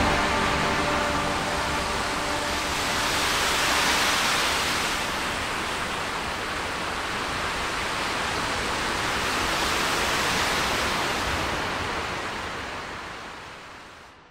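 The end of a drone-doom instrumental: the last held chord dies away in the first couple of seconds, leaving a steady, even hiss-like noise wash. The noise swells twice, then fades out to silence at the very end.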